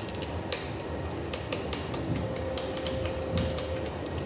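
Screwdriver turning a screw to fasten a detector's mounting bracket to a pole: a string of sharp, irregular clicks and ticks over steady background noise.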